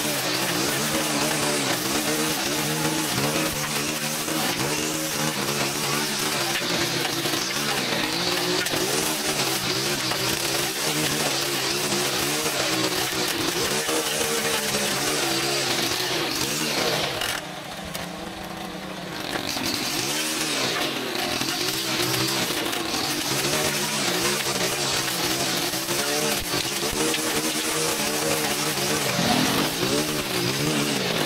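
Stihl gas string trimmer running at high throttle while cutting through brush, its engine pitch wavering up and down under the load. About halfway through the throttle eases off for a couple of seconds, then it revs back up.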